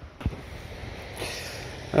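A single dull knock about a quarter second in, then a soft hissing rustle: the heavy metal bolt cap being put into the finds pouch and the pouch being handled.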